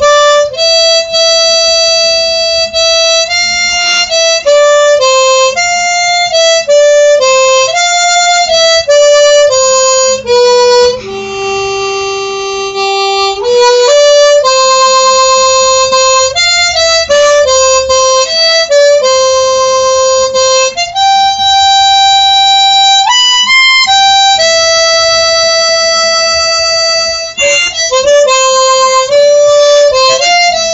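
Harmonica played solo and close up: a slow melody of held single notes, with one long lower note about halfway through.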